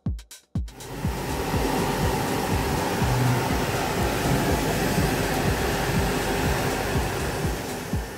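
CNC laser cutter running, a steady loud rush of blowing air that starts about a second in. Electronic music with a steady kick-drum beat plays underneath.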